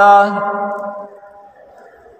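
A man's preaching voice holding a drawn-out word in a sing-song delivery, fading out over about a second, then a short quiet pause.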